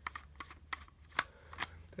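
Hand screwdriver unscrewing the housing screws of a plastic brushcutter throttle handle: a handful of sharp, irregular clicks and ticks of metal on plastic.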